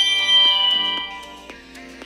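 Meccano M.A.X. robot's electronic chime after hearing a spoken answer: a bright chord that fades away over about a second and a half. It signals that the answer was recognised.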